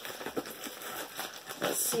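Thick mailer wrapper crinkling and rustling in irregular crackles as hands pull and peel it off a tightly rolled package.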